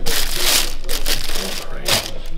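Plastic wrapping inside a sneaker box crinkling as it is pulled back by hand, loudest in the first second, with another short rustle near the end.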